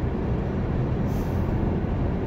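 Steady low rumble of a car's engine and road noise, heard from inside the cabin.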